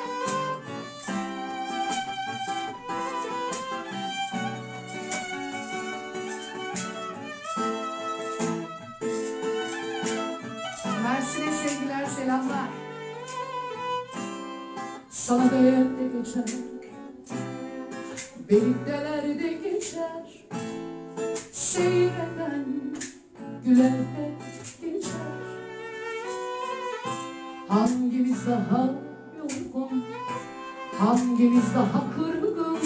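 Live acoustic band music: a violin plays the melody over acoustic guitar. In the second half a woman's voice sings over them.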